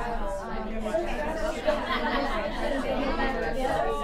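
Many people talking at once in overlapping conversations, a steady room-wide chatter with no single voice standing out.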